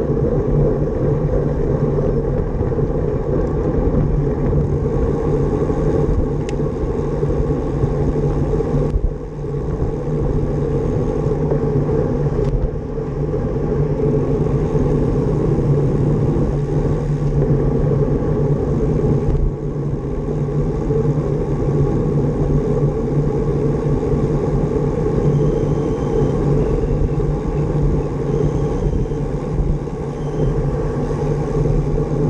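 Steady wind and road rumble on a bicycle-mounted GoPro's microphone while riding at race speed, the noise dipping briefly a few times.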